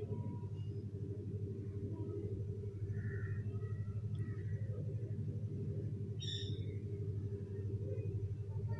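Steady low hum, with a few faint chirps about three seconds in and one short, higher chirp a little after six seconds.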